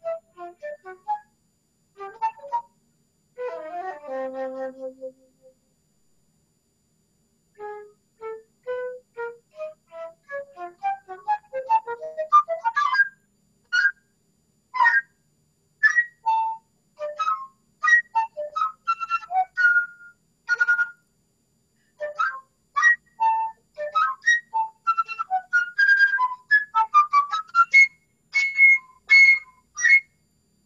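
Solo flute playing a fast passage of short, separately tongued notes, climbing from the low register into the high register, with a pause of about two seconds early in the passage.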